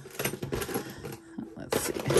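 Costume jewelry pieces clinking and rustling as they are handled, with a louder rattle of a clear plastic storage bin near the end.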